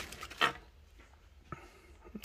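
Thin plastic bag crinkling briefly as an action figure is slid out of it, then a soft, short click about a second and a half in.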